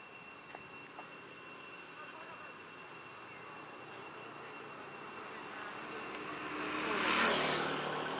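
A Toyota pickup truck approaching and driving past, its engine and tyre noise rising over several seconds. The sound is loudest about seven seconds in, with the pitch dropping as it goes by.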